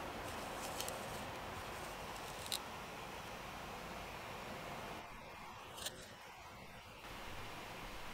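Quiet room tone: a steady faint hiss with a few soft ticks, about a second in, near two and a half seconds and near six seconds.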